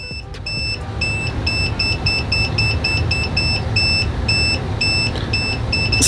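OWON CM2100B clamp meter in non-contact voltage (NCV) mode beeping in a steady series of short high beeps, about two and a half a second, as it senses voltage from a nearby live power line. A low steady hum runs underneath.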